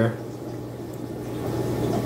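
Aquarium filter running: water trickling and bubbling over a steady low hum, growing slightly louder toward the end.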